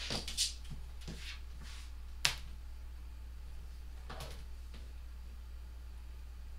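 Clicks and light knocks of a clear acrylic quilting ruler and rotary cutter being handled on a cutting mat while a quilt block is trimmed. There is one sharp click about two seconds in and a brief scraping stroke about four seconds in, over a steady low hum.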